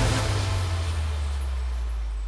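The close of a TV theme tune: a held low bass note under a hissing whoosh, both slowly dying away.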